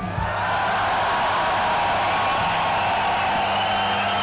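Concert crowd cheering and shouting right after a rock song ends, over a steady low hum.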